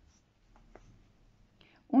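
Near silence with a few faint light ticks from hands handling a ball of yarn and a crochet hook on a tabletop.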